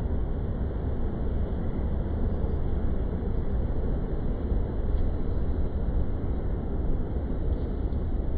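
Steady city street noise, mostly a low rumble of traffic.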